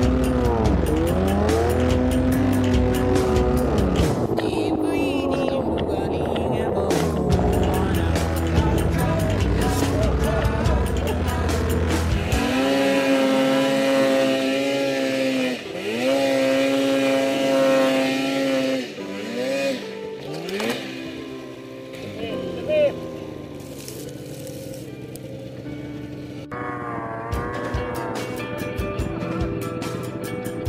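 Snowmobile engine revving up and down again and again, its pitch dipping and climbing as the throttle is worked in deep snow, with music mixed over it. The revving is loud with a heavy low rumble at first, then thinner and quieter after about 20 seconds.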